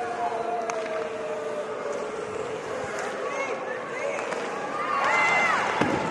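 Crowd noise in an ice hockey arena during play, with a long held tone that slides slowly down over the first few seconds and a voice calling out near the end.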